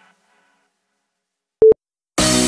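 After a second and a half of near silence, a single short electronic beep sounds: one steady mid-pitched tone from the workout's interval countdown timer, marking the end of the rest break.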